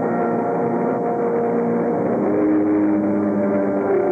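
Marching band brass playing slow, sustained chords, with the held notes moving to a new chord a little past halfway.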